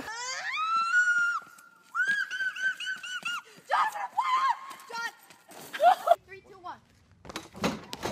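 People's voices: a high shriek that rises in pitch and holds for about a second, then a quick run of short high cries about six a second, followed by brief shouts and exclamations.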